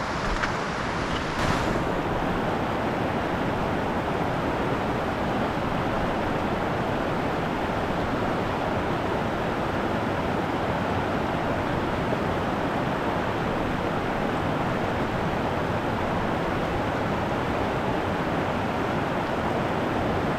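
Fast, shallow mountain stream rushing over boulders and cobbles: a steady, even rush of water.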